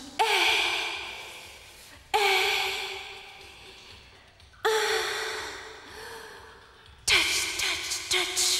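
A woman's breathy, moaning sighs, four in all about two and a half seconds apart. Each starts suddenly, dips in pitch and fades slowly away.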